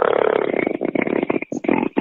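A man's voice over a narrow, phone-like audio line, holding a long creaky hesitation sound that breaks off about a second and a half in.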